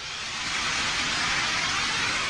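Anime sound effect: a steady rushing noise, like wind, swelling slightly.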